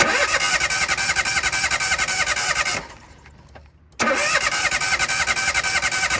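Starter motor cranking the Toyota 1KR three-cylinder engine in two bursts, the first nearly three seconds and the second about two seconds after a short pause, each with a fast even pulse and a steady whine. It is turned over with one spark plug out of its hole and clamped to the engine to check the spark of the modified plug.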